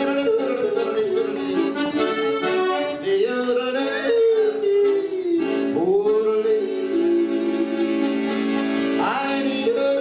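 A man yodeling into a microphone over a piano accordion: the accordion holds sustained chords while the voice leaps and slides between high and low notes several times.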